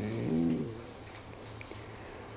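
A man's brief drawn-out hesitation sound, a hummed "mm" or "eh" of about half a second whose pitch rises and falls, then quiet room tone.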